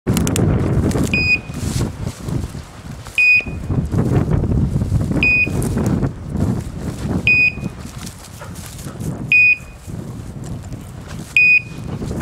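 Electronic beeper collar on a running hunting dog, giving a short, high beep about every two seconds, six beeps in all. The steady spacing is typical of a beeper's run mode, which tells the handler the dog is on the move.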